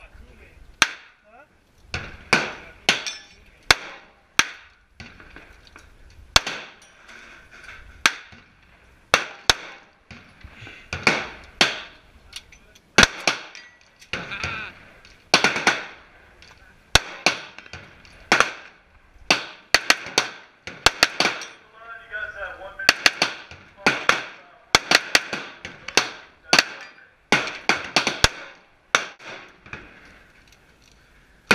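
Handgun gunfire at an outdoor range: sharp shots, each with a short echo, coming at irregular intervals of about one a second and sometimes two or three in quick succession, from the handgun close by and from other shooters.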